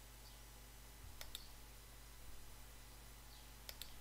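Computer mouse clicking against faint room hum: two quick pairs of clicks, one about a second in and one near the end.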